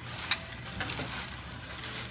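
White plastic trash bag liner rustling and crinkling as it is handled, with a few short sharp crackles about a third of a second and around a second in.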